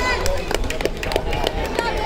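Crowd of spectators talking and calling out in a large gym, many voices overlapping, with a few short sharp sounds among them.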